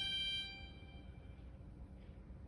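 A held chord from the song's accompaniment dying away within the first second, leaving a low room hum.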